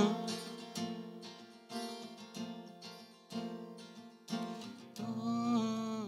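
Acoustic guitar with a capo, fingerpicked softly in a song's outro: single plucks and chords about a second apart, each ringing and fading. A soft wordless voice joins in about five seconds in.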